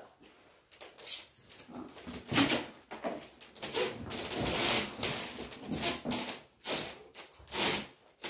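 Handling and movement noises: a large shield being lifted away, clothing and cloak rustling, and footsteps on creaking old wooden floorboards. They come as a string of irregular short rustles and scrapes after a quiet first second.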